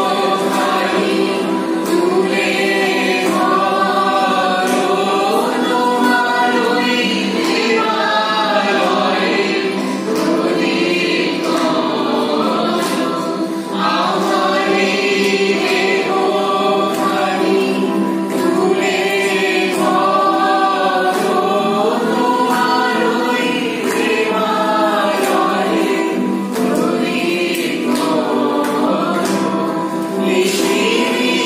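A group of male and female voices singing a Bengali song together, accompanied by two strummed acoustic guitars.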